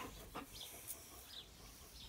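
Quiet outdoor ambience with a few faint, short, high chirps and a couple of soft clicks.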